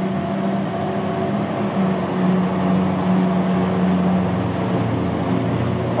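A classic 1960s Chevrolet sedan's engine running with a steady low hum.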